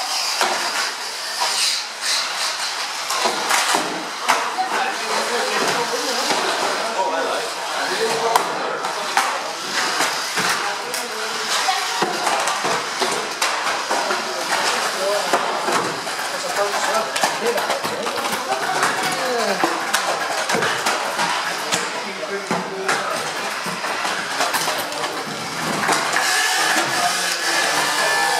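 1/12-scale RC banger cars racing on a carpet oval, with frequent sharp plastic knocks and clatters as the cars hit each other and the trackside barrier. People talk in the background throughout.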